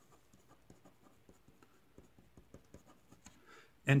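Marker pen writing a word in quick, short, faint strokes on a white writing surface.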